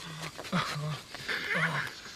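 A man's voice saying a short phrase, then laughing in short, breathy bursts about half a second apart, with a louder burst near the end.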